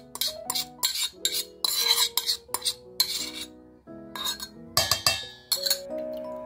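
A quick string of short scraping and clinking sounds from a spatula and utensils against a stainless steel mixing bowl while ingredients are added, over soft background music.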